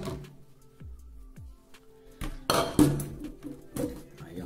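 Glass jar, plastic funnel and bottles being handled and set down: a knock at the start, then a cluster of clinks and knocks between two and three seconds in, and one more near the end, over background music.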